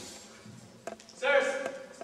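A voice speaking stage lines, starting about a second and a quarter in, preceded by a short sharp click.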